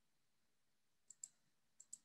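Near silence, broken by two pairs of faint, short clicks: one pair about a second in and another near the end.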